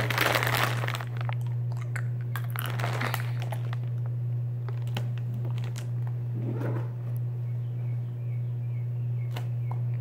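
A plastic candy bag crinkling as it is pulled open, loud for about the first second, then only a few small clicks and rustles. A steady low hum runs underneath.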